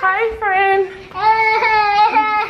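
A young child's high-pitched voice in two long drawn-out notes, the second starting about a second in.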